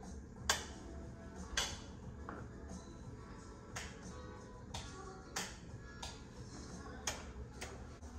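Rocker-style wall light switches clicking about eight times at irregular intervals, as the bedside lights are switched.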